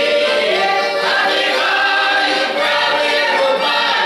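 Russian Cossack folk choir of mostly women's voices singing in full chorus, with held, slowly moving notes.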